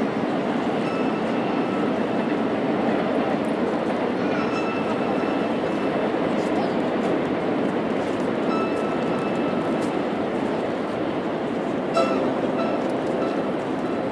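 Steady murmur of an outdoor crowd, with a few faint, brief held high tones now and then and one short sharp sound near the end.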